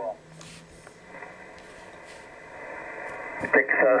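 Kenwood TS-480HX HF transceiver's receive audio with its DSP noise reduction (NR1) just switched on: a faint, steady hiss of band noise. A man's voice starts near the end.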